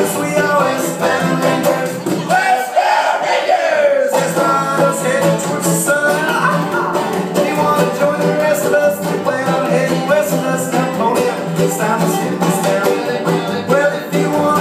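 Acoustic string band of guitar, mandolin, banjo and upright bass playing an instrumental break with a steady strummed rhythm. The bass drops out for a couple of seconds about two seconds in.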